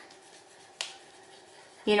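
A black wax crayon rubbing faintly on paper as a hat is coloured in, with one sharp click a little under a second in. Speech starts near the end.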